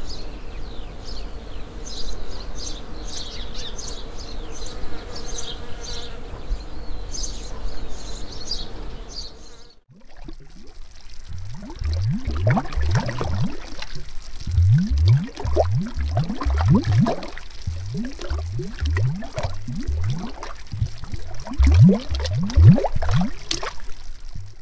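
Sound-design effects in two parts. First a steady buzzing drone with a low hum and quick high ticks. Then, after a brief break about ten seconds in, a dense irregular run of watery bubble bloops, each a quick rising pitch.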